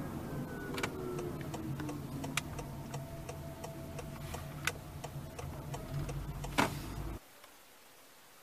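Cabin noise of a moving Honda Freed Hybrid: a steady low rumble with a faint whine falling in pitch over the first two seconds and scattered light clicks. It cuts off abruptly about seven seconds in.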